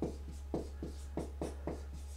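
Marker pen writing capital letters on a large sheet on the wall: a quick run of short, separate strokes, a few a second.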